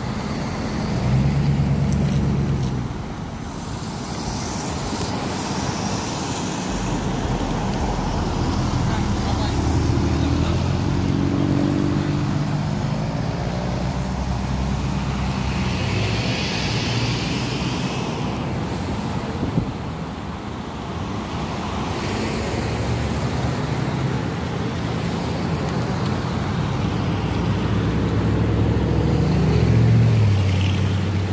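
Road traffic circling a roundabout: car and truck engines humming and rising and falling as vehicles pass, with tyre noise. One vehicle passes louder and closer around the middle.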